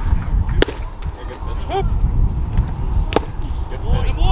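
A pitched baseball pops sharply into the catcher's mitt about half a second in, and a second sharp glove pop follows a little after three seconds, over low wind rumble on the microphone.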